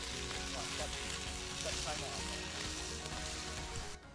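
Hot dogs sizzling in a frying pan over a campfire: a steady hiss.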